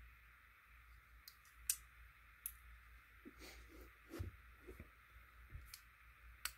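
Near-silent room hiss with a few faint, sharp clicks and soft knocks as metal folding knives are handled and swapped; the clearest click comes a little under two seconds in.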